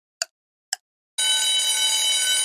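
Quiz countdown timer sound effect: two clock ticks half a second apart, then about a second in a steady ringing alarm tone starts, marking that time is up.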